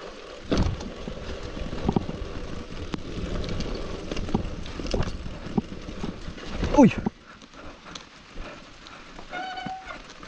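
Mountain bike riding fast down a dirt forest trail: tyre noise with knocks and rattles of the bike over roots and bumps. A loud pitched sound slides down in pitch about seven seconds in, and a brief steady tone comes near the end.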